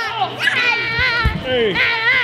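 Children's high-pitched voices shouting and squealing as they play, with a low thump about a second and a half in.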